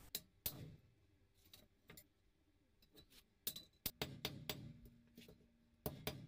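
Blacksmith's hammer blows on steel at the anvil, striking a hand-held chisel: a faint, irregular series of sharp metallic strikes, some with a short ring after them.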